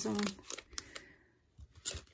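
Foil trading-card packs rustling and crinkling faintly as they are handled, with a few light taps near the end as a pack touches the table.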